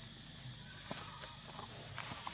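Quiet outdoor background with a steady faint hiss. About a second in comes a short crackle of dry leaves, followed by a few fainter clicks.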